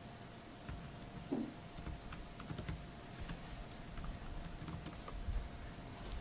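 Typing on a laptop keyboard: scattered light key clicks, over a faint steady hum.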